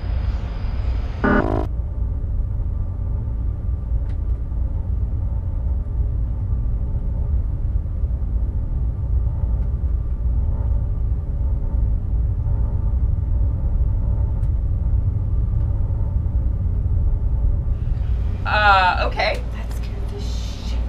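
A steady low rumble with faint sustained tones above it, with a brief voice about a second in and speech again near the end.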